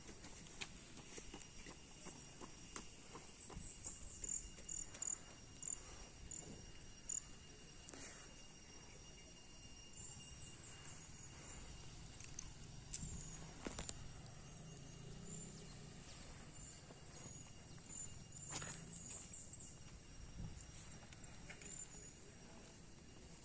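Faint outdoor ambience of a tropical forest edge: a steady high insect-like whine with rows of short, high chirps from birds or insects. Scattered sharp clicks and knocks run through it, the loudest a few seconds in and again about two-thirds of the way through.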